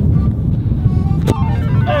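Wind buffeting the microphone outdoors, a steady low rumble, with a single sharp thud about a second and a quarter in.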